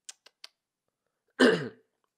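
Three light, quick computer-key clicks as an autocomplete list is stepped through, then a man clearing his throat once, which is the loudest sound.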